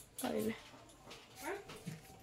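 Two brief, fairly quiet vocal sounds about a second apart, the first falling in pitch and the second rising.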